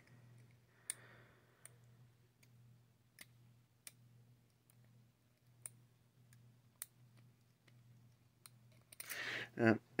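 Lock-picking tools in a brass lock cylinder: about seven small, sharp metal clicks at irregular intervals as the pick and tension tool are worked, over a faint steady hum.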